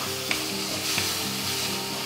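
Onion-tomato masala sizzling steadily as it fries in a clay pot while a wooden spatula stirs it, with a couple of light clicks of the spatula against the pot.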